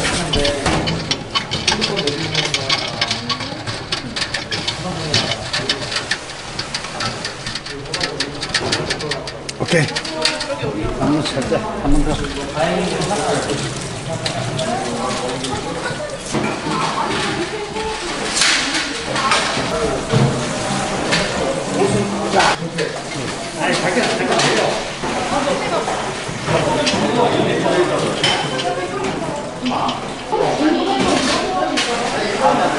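Many people talking at once across a busy room, with scattered knocks and clatter of metal kitchen and brewing equipment, most frequent in the first third.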